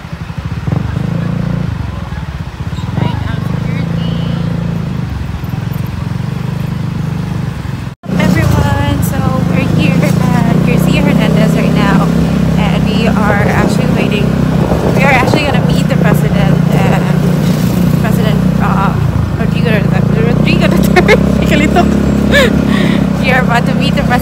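Motorcycle engine running steadily while riding, heard from on the bike, under a person's voice. There is a sudden cut about eight seconds in, and the engine is louder after it.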